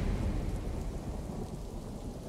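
Thunderstorm sound effect: a low thunder rumble with rain-like hiss, slowly fading away.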